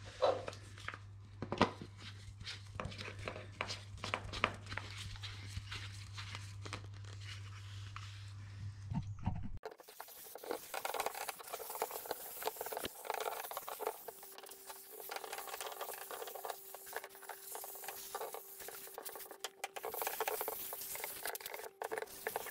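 Quiet, irregular clicks, scrapes and crinkling from handling a PU foam gun and its can with plastic-gloved hands while spraying insulating foam. A low hum under the first half stops abruptly about ten seconds in, and a faint steady tone runs through the last eight seconds.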